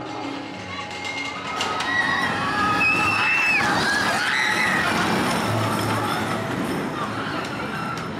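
Arrow suspended roller coaster train (Vampire) passing close overhead: the rumble of its wheels on the track swells about two seconds in and fades away over the last few seconds, with high wavering cries from the riders at its loudest.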